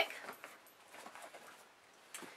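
Faint rustling of fabric bags and pouches being handled, dying away after about a second.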